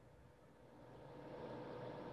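Near silence for about half a second, then a faint steady hiss of room and microphone noise comes up, with a faint steady hum under it.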